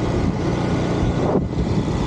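Wind rushing over the microphone of a camera on a moving motorbike, with the motorbike running underneath; the noise thins briefly about one and a half seconds in.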